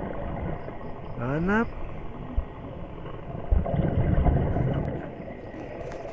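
Muffled underwater rumble of water noise against a diving camera's housing during a night dive, with a short rising voice-like hum about a second in.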